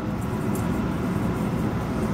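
Steady low background rumble, with faint light shakes of onion powder from a plastic spice bottle into a stainless steel bowl about half a second in.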